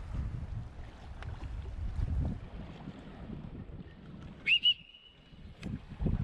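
A whistle blown about four and a half seconds in: a short rising chirp, two quick blasts and a brief held note, a warning to swimmers to keep away from the cliffs. Before it, low wind noise on the microphone.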